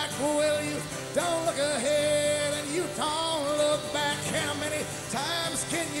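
Live solo acoustic performance: a man singing over his own strummed acoustic guitar.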